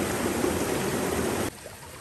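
Water of a small rocky stream running steadily; about one and a half seconds in the sound drops abruptly to a much quieter level.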